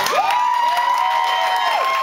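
Audience cheering and applauding, with long, gliding whoops held over the clapping.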